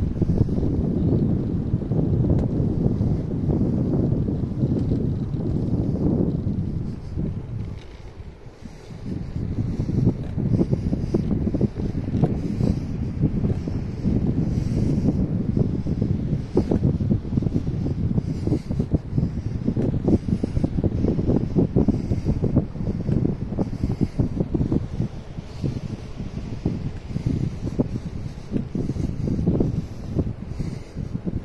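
Wind buffeting the microphone in loud, uneven gusts, with a short lull about eight seconds in.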